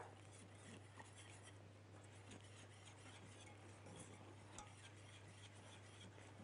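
Near silence: a low steady hum under faint scraping of a wire whisk stirring béchamel sauce in a steel pot.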